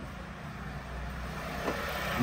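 Steady low background hum, with no distinct event standing out.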